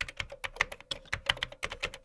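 Computer keyboard typing: a quick, uneven run of key clicks, about eight to ten a second.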